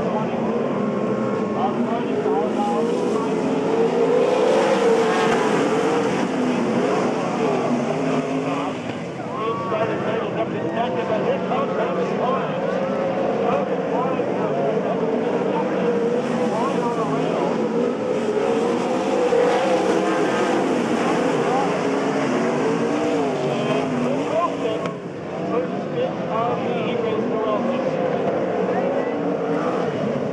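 A pack of winged sprint cars racing on a dirt oval, several V8 engines running at once and overlapping, their pitch rising and falling as they throttle through the turns.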